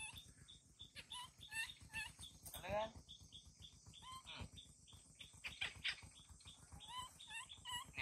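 Baby macaque whimpering in short, high, faint calls, with one longer rising cry about three seconds in.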